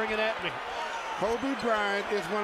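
Basketball being dribbled on a hardwood court, with a voice over it.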